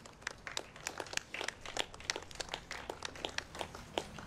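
A run of irregular sharp clicks and crackles, several a second, busiest in the middle.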